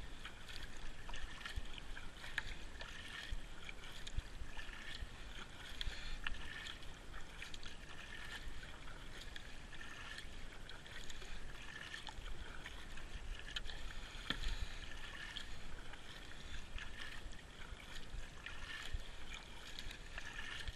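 Kayak paddle strokes on calm water: the blades dipping and pulling through, with water splashing and trickling off them, swelling and easing with each stroke every second or two.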